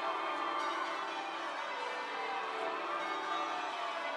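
Westminster Abbey's bells pealing in change ringing: a dense, steady wash of many overlapping bell tones.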